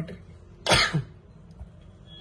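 A man coughs once, a short, sharp cough about three-quarters of a second in.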